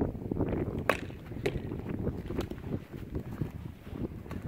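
A few sharp knocks of a hurley striking a sliotar and the ball hitting a wall, the loudest about a second in, over wind rumble on the microphone.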